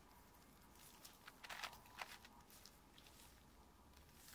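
Faint plastic clicks and scraping of an 8x8x8 Rubik's cube's layers being turned by hand, a few soft clicks between about one and two seconds in, otherwise near silence.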